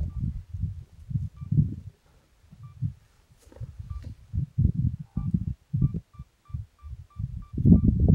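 Wind buffeting an outdoor microphone: irregular low rumbling gusts that drop away briefly in the middle. Faint short high pips repeat through it, at first about once a second, then about three a second in the last few seconds.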